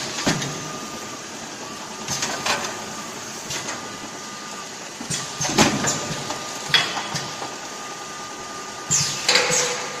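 Automatic case packing machine running: a steady thin hum under irregular clacks and short hisses, about every one to three seconds, as its air-driven pick-and-place gripper cycles.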